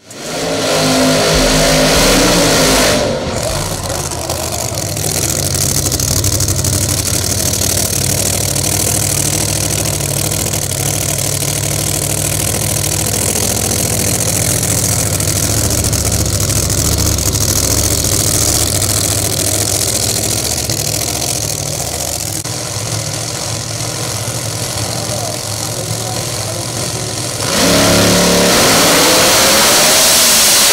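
Supercharged Pro Mod drag car engine: revved hard with rising pitch for the first few seconds, then running steadily at low revs while staging, then launching at full throttle with a sudden loud rise in pitch near the end.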